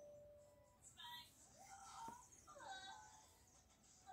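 Near silence: room tone, with faint, scattered tones in the background.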